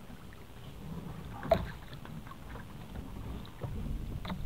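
Small boat at sea: a low rumble of wind and water, scattered light knocks, and one sharp knock about a second and a half in.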